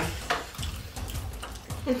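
Noodles being eaten with chopsticks: faint slurping and chewing, with a few light clicks of chopsticks against plates.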